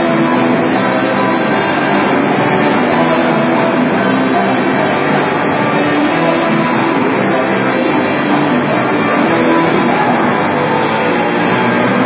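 Live rock band playing with electric guitars, bass and drums, loud and steady throughout.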